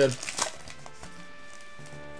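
Foil booster-pack wrapper crinkling as it is torn open in the first half-second, then soft background music with long held notes.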